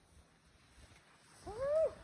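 A single short vocal cry about a second and a half in, rising and then falling in pitch; it is otherwise quiet.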